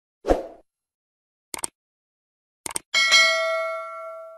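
Subscribe-button animation sound effect: a short thump, two pairs of quick clicks, then a bright bell ding, the loudest sound, that rings on and fades over about a second and a half.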